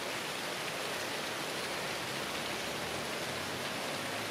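Steady rain falling, an even hiss with no change.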